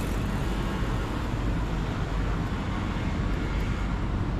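Steady city traffic noise: a continuous low rumble with a hiss above it and no distinct events.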